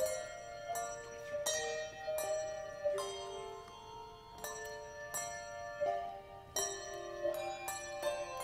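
Handbell choir playing: brass handbells rung one after another, each struck note ringing on and overlapping the next, with a new strike about every half second to second.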